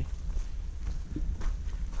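A hiker's footsteps on a forest trail, a few soft steps, over a steady low rumble on the camera microphone.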